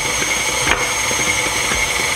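Electric stand mixer running steadily with a whining motor while mixing cookie batter, with one light knock about a third of the way in.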